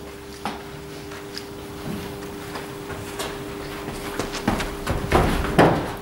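Footsteps of a bowler running in on artificial turf in an indoor cricket net, a few quick footfalls growing louder near the end. A steady hum runs underneath.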